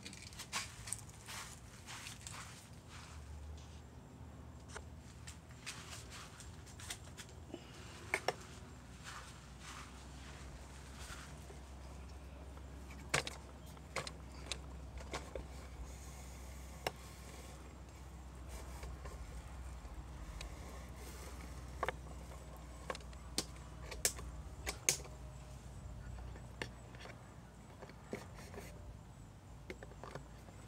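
Scattered light clicks and knocks from plastic water bottles being set in place on a foam target block, with occasional footsteps, over a low steady rumble.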